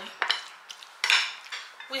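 Metal spoon mixing chunky guacamole and scraping and clinking against the bowl, with a louder clatter about a second in.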